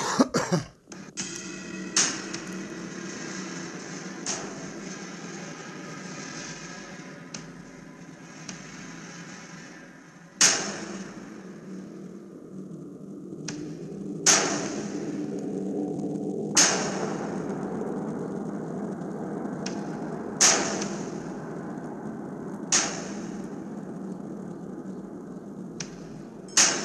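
Sharp impact hits, about eight, spaced irregularly a few seconds apart, each dying away in a ringing tail, over a steady low background hum.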